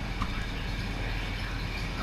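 Steady low hum and hiss of background room noise, with one faint click about a fifth of a second in.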